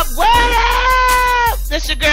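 Hip hop track: one voice slides up into a single long high note and holds it for about a second and a half, over a steady bass line.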